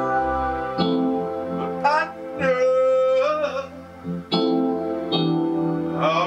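Kurzweil digital piano played with a layered piano-and-strings sound: slow, sustained chords that change about every second or so. A man's voice briefly sings along over the chords in the middle.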